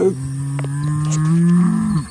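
A long, low bull-style bellow that holds a steady pitch for about two seconds, rises slightly near the end, then cuts off.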